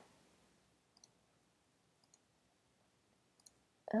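Three faint, sharp computer clicks, about a second apart, over a quiet room.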